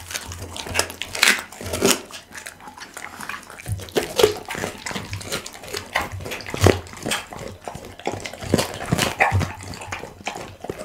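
Pit bull chewing a raw duck neck close to the microphone: irregular sharp crunches of bone, several a second, with wet chewing between them.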